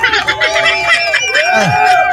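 A high-pitched voice with music, the voice drawn out and bending up and down in pitch.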